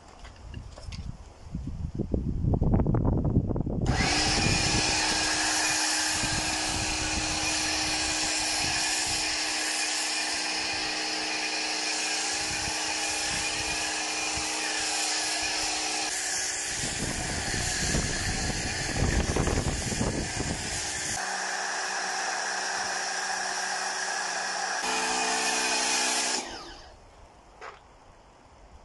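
Pressure washer running while a snow foam lance sprays foam onto a car: a steady motor whine with spray hiss that starts abruptly about four seconds in. Its tone shifts a couple of times, and it stops abruptly near the end.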